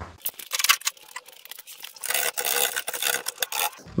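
A hand scraper working thick underseal off the rusty outer sill of a classic Mini: a few sharp clicks in the first second, then a quick run of scraping strokes from about two seconds in until just before the end.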